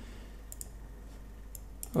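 A few faint computer mouse clicks in a pause, over a low steady hum.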